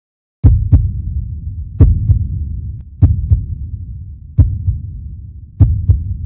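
Heartbeat sound effect: five deep double thumps, lub-dub, about every 1.3 seconds over a low rumble.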